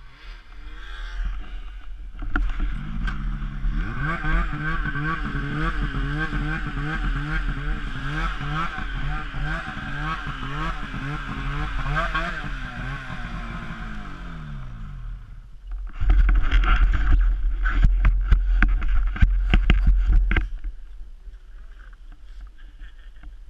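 Snowmobile engine idling with a wavering, uneven pitch, which falls away about fifteen seconds in. Then comes about four seconds of loud rumble and buffeting as the sled moves off, which eases near the end.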